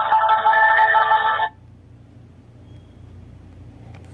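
Marimba-like hold music playing over a phone line, thin and cut off above the upper mid-range. It stops abruptly about a second and a half in, leaving only a faint low hum on the open line.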